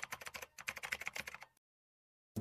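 Keyboard-typing sound effect: a quick run of light key clicks that stops about one and a half seconds in, giving way to silence.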